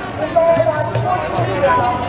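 Voices singing over hand drums beating a steady rhythm of about two to three strokes a second.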